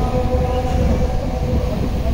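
Call to prayer (azan) sung by a muezzin over loudspeakers, one long held note that fades about a second in, over a steady low rumble of wind on the microphone.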